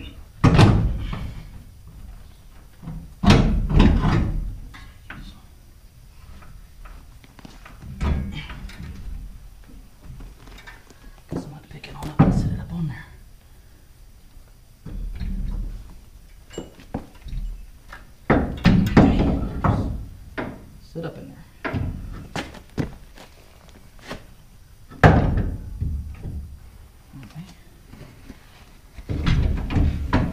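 Irregular thunks and metal knocks, in several separate clusters, as a heavy steel leaf spring and its mounting hardware are worked into place under a pickup's rear axle.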